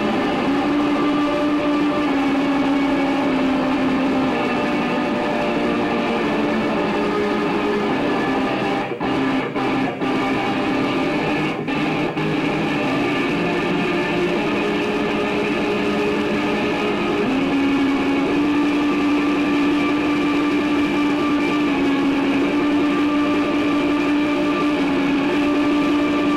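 Live guitar music: an instrumental passage of sustained, droning notes held at a steady loudness, with a few very brief breaks about nine to twelve seconds in.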